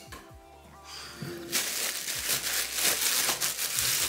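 A plastic bread bag crinkling loudly as it is handled and pulled open, starting about a second and a half in, over quiet background music.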